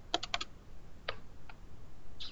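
Keys tapped on a laptop keyboard: a quick run of four clicks, then two single taps.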